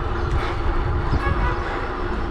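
Wind buffeting the microphone of a camera on a moving bicycle, an irregular low rumble, mixed with tyre noise from the paved road.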